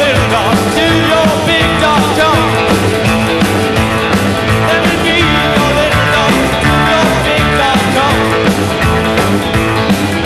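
Live rock and roll band playing in a rockabilly style: a man sings lead over electric guitar and drums, with a walking bass line underneath.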